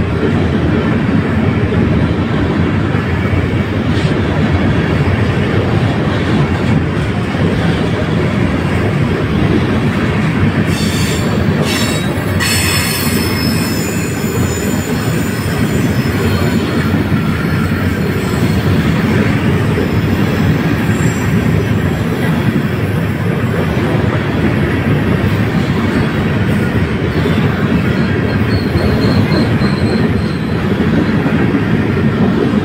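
Freight train of covered hopper cars rolling past at close range: a loud, steady rumble of steel wheels on rail. About eleven seconds in there are a few sharp clanks, then a thin, high metallic wheel squeal that lingers faintly.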